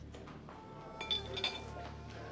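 Small hard objects clinking lightly, twice, about half a second apart, around the middle, as something is handled at a bedside.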